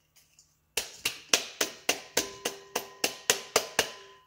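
A blender's grinder cup being knocked over a steel bowl to shake out ground almonds: about a dozen sharp knocks, roughly four a second, starting about a second in, with a faint ringing tone.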